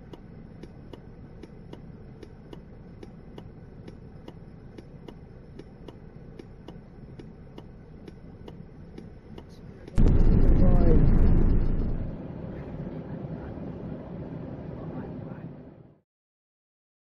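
Turn indicator ticking steadily, about two to three clicks a second, over the low running noise of a vehicle cab. About ten seconds in, a sudden loud rush of noise cuts in, with a wavering voice-like tone; it eases after a couple of seconds and fades out just before the end.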